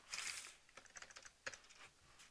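Typing on a computer keyboard: a quick, irregular run of faint key clicks while code is being edited.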